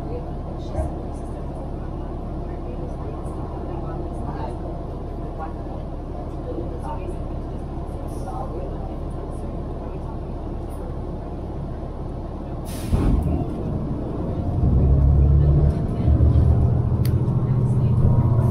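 City transit bus idling with a steady low engine rumble while stopped at a red light. About thirteen seconds in there is a short hiss of air as the brakes release, then the engine gets much louder as the bus accelerates away.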